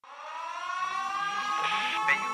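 An air-raid siren starting up, its tone rising slowly in pitch as it grows louder.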